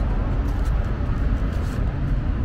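Steady freeway traffic noise: a continuous low rumble of passing vehicles with no single one standing out.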